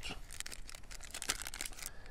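Small clear plastic pouch crinkling as a stretch tourniquet is pushed into it by hand: a run of irregular soft crackles.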